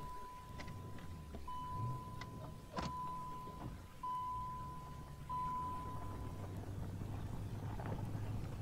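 Low, fairly faint rumble of a Chevrolet Corvette C4's V8 engine as the car pulls away. A thin steady high tone comes and goes through the first six seconds, with a few light clicks.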